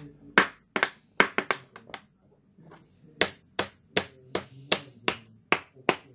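Fingertip tapping on the plastic bezel of a Sony Vaio laptop's display: a quick, uneven burst of sharp taps in the first two seconds, then a pause, then steady taps about two and a half a second.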